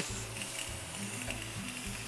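Garden hose spraying water onto a water buffalo and the wet concrete floor, a steady hiss of spray.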